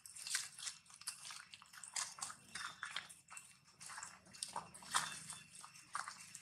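Dry leaves and ground litter crunching and rustling underfoot: a dense, irregular run of short crackles.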